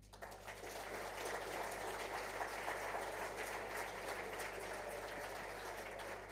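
Audience applause, building over the first second and then holding steady.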